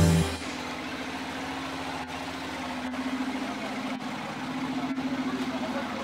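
Loud music cuts off right at the start. It leaves a steady, engine-like motor hum over outdoor background noise, with a few faint clicks.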